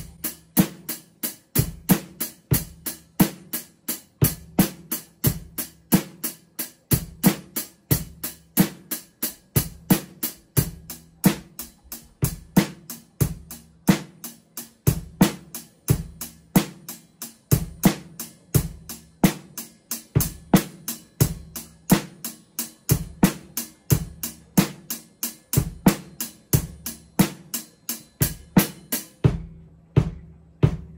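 Mapex drum kit played in a steady beat, kick, snare and hi-hat or cymbal strokes at about three to four a second. About a second before the end the cymbal brightness drops out and only the drums carry on.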